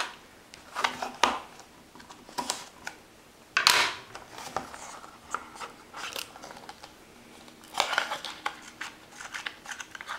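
A cardboard trading-card box being handled and slid open by hand, making a series of short scraping and rustling sounds. The loudest comes at about three and a half seconds in, with another cluster near eight seconds.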